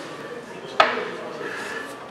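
A single sharp clank with a short ringing tail about a second in, over a low murmur of voices.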